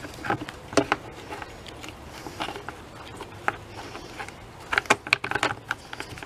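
Plastic side cover of a Poulan chainsaw being pressed onto the saw body over the bar and chain: scattered clicks and knocks of hard plastic against plastic, with a quick run of clicks about five seconds in.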